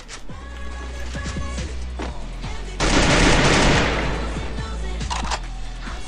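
Shooter video game audio: game music with a steady deep bass under gunfire, and a loud burst of noise about three seconds in that lasts about a second.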